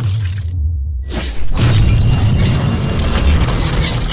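Cinematic intro sound design over music: a deep, sustained low rumble with crackling, shattering noise on top. The high end drops out briefly, then a sudden loud hit comes about a second and a half in.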